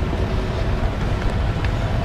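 Steady low rumble of wind buffeting the microphone, with street traffic going by.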